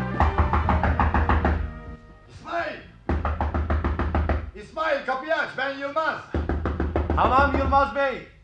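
Scene-change music in a radio drama, with knocking on a door as a sound effect.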